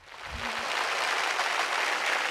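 Audience applauding, swelling over the first half second and then holding steady.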